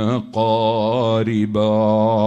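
A man chanting a long, drawn-out melodic line in an Islamic devotional style, with a wavering pitch. The voice breaks off for a moment just after the start and dips briefly near the end. A steady low hum runs underneath.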